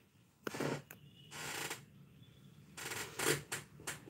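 A handful of short rustling, scuffing noises close to the microphone, like a hand handling the phone or brushing clothing, coming at uneven intervals.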